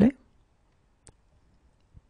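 The last spoken word ends right at the start, then near silence with a single faint click about a second in: a computer mouse button clicked.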